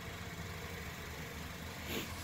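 Honda Fit's four-cylinder VTEC engine idling, a faint, steady low hum.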